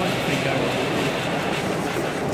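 A LEGO model train running on its track, heard over the steady noise of a busy exhibition hall.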